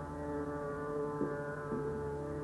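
Tanpura drone sounding on its own, a steady chord of many held tones with a few faint plucks.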